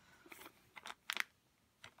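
Faint handling noises: a few soft clicks and rustles as a metal bookmark and its plastic bag are handled, the sharpest just past halfway through.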